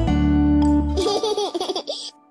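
The song's backing music holds a final chord for about a second and stops. It is followed by a burst of children's laughter that lasts to the end.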